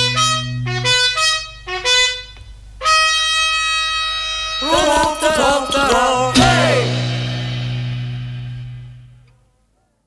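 Closing bars of a 1967 British pop single played from a 45 rpm record: a run of short, separate notes, then held chords with a brief wavering passage in the middle, and a last chord that fades out to silence near the end.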